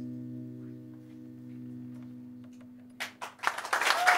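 The final chord of acoustic and electric guitars rings out and slowly fades. About three seconds in, audience applause breaks out.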